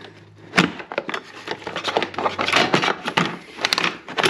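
Plastic underbody splash shield of a Jeep Wrangler JK being worked free from the front frame: repeated scraping, rubbing and knocking of plastic against metal, with a sharp knock about half a second in.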